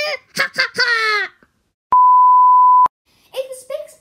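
A single steady bleep tone, about a second long, starting about two seconds in and stopping abruptly. It is the loudest sound here, an edited-in censor-style bleep, with a child's speech before and after it.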